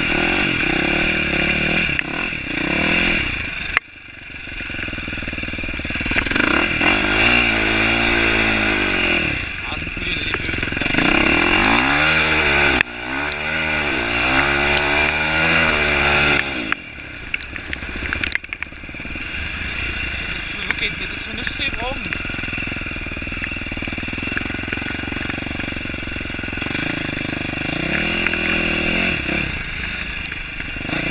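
KTM 450 SX-F single-cylinder four-stroke motocross engine being ridden hard, its pitch climbing and falling with each surge of throttle and gear change, with two strong surges in the middle, then running more evenly. Wind noise rushes over the microphone the whole time.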